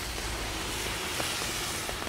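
Steady rain falling, an even hiss with a few faint ticks.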